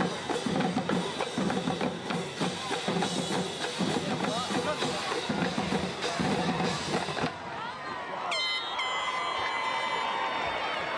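Marching-band drumline playing a fast beat on bass and snare drums, stopping about seven seconds in. A steady high tone comes in near the end.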